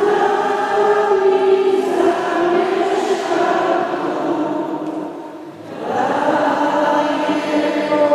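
A choir singing a slow hymn in long held phrases, with a pause for breath about five seconds in before the singing resumes.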